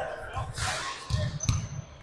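Basketball bouncing on a gym's hardwood floor: a few low thuds, the sharpest about one and a half seconds in, under faint voices in a large hall.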